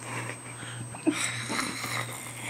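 A young woman panting through her open mouth with her tongue out, imitating a dog, with a sharper breath about a second in.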